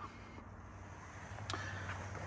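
Quiet background with a faint steady low hum and one brief click about a second and a half in.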